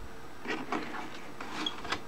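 Paper envelopes rustling and scraping against plastic as they are slid down into the rear paper feed of an Epson ET-2850 inkjet printer, with the hand brushing the feed's edge guide; a few faint scrapes about halfway through and again near the end.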